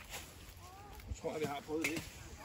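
Speech only: a person's voice talking briefly in the second half, with one sharp click near the end.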